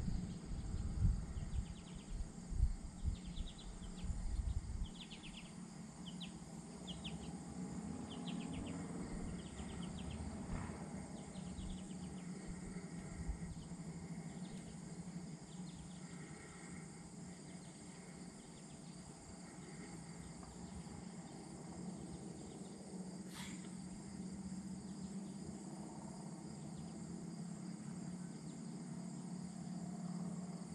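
Faint outdoor ambience of insects chirping in short pulsed bursts, repeated about every second through the first half and fainter after. A steady low hum runs underneath, and wind buffets the microphone in the first few seconds.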